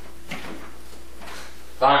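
Steady electrical hum and hiss with a few faint knocks from a media cabinet being handled, then a voice says "Time" loudly near the end.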